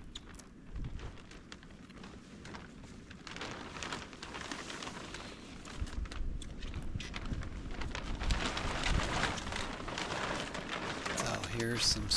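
Black plastic sheeting rustling and crinkling as it is pulled and folded back off a stack of lumber, louder from about three seconds in.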